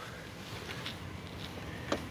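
Quiet background noise inside a vehicle's cab, with a few faint ticks and a small click from the camera being moved.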